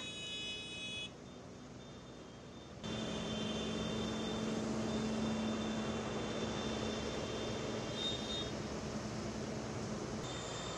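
Vehicle horns held in long steady blasts over a rumble of engines. The sound drops away abruptly about a second in and comes back louder just before three seconds, with one low horn tone held from then on.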